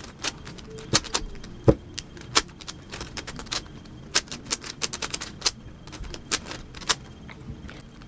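A stickerless plastic 3x3 Rubik's cube being scrambled by hand: a quick, irregular run of sharp clicks and clacks as its layers are turned.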